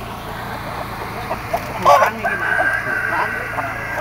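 Caged chickens clucking over market chatter, with a loud short squawk about halfway through, followed by a rooster crowing in one long call.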